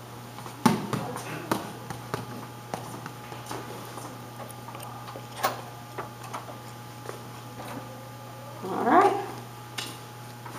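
A small ball released with an underhand roll strikes the tiled floor with a sharp knock about half a second in, followed by a few fainter knocks as it rolls away. Near the end comes a short rising voice sound.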